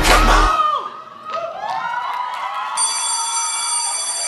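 A dance-mix track with heavy bass breaks off about half a second in, leaving an audience cheering and whooping. A high, steady electronic ringing tone joins about two-thirds of the way through.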